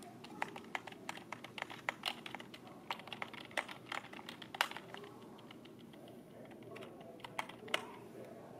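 Typing on a computer keyboard: a quick run of keystrokes for about five seconds, a short pause, then a few more keys struck near the end.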